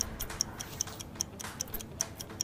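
Countdown-timer ticking: quick, even clock ticks at about five a second, marking the time running out.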